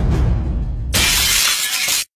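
Low, drum-heavy music, then about a second in a sudden loud crash that fills every pitch and runs on for about a second before cutting off.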